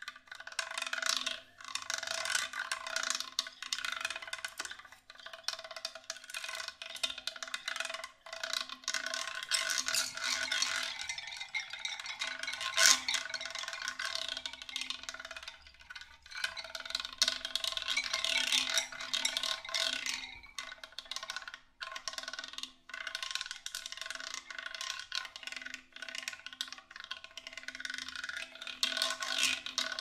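Live experimental percussion music: a dense, continuous clatter of small strikes and rattles over a low, steady held drone, thinning out briefly a few times. One sharp strike about 13 seconds in is the loudest sound.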